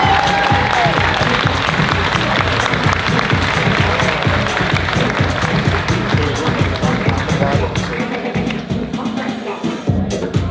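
An audience applauding over loud music with a steady beat. The clapping is densest early and thins out toward the end.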